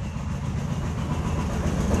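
A steady low engine-like rumble under a faint hiss, growing slightly louder toward the end.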